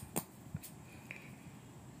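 A quiet stretch with two faint clicks in the first second, from handling a ginger root at a plastic refrigerator crisper drawer.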